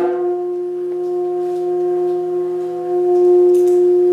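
Tenor saxophone holding one long low note, swelling a little louder about three seconds in.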